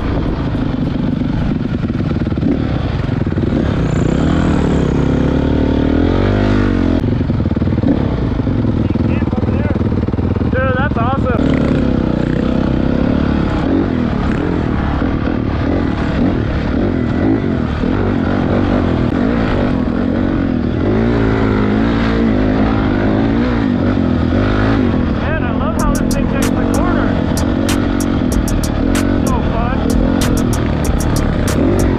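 Honda CRF450 single-cylinder four-stroke dirt bike engine riding a trail, its revs rising and falling with the throttle, with wind rushing over the microphone. A run of sharp ticks comes near the end.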